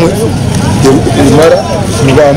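A man speaking in Runyankore, over steady low background noise.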